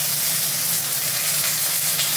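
Beef steak searing in a hot iron pan: a steady frying sizzle, with a low steady hum underneath.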